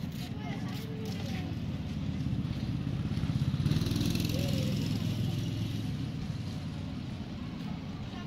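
A motor vehicle passing by, its engine rumble and tyre noise swelling to a peak about four seconds in and then fading.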